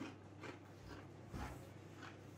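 Quiet room with a low steady hum and two faint crunches of tortilla chips, about half a second and a second and a half in.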